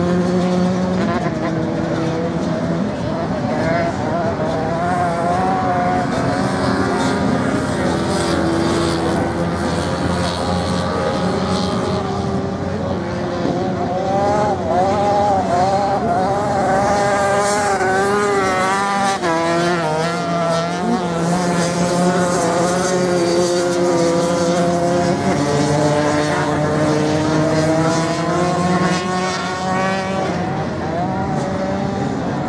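Several motocross bikes racing on a sand track, their engines overlapping and revving up and down. The revs waver most strongly in the middle of the stretch.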